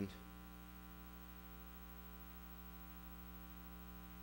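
Faint, steady electrical mains hum, a buzz of many even tones, with nothing else sounding.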